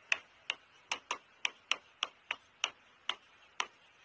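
A pen tapping against a writing board as words are handwritten: about a dozen sharp clicks at uneven intervals, a few per second.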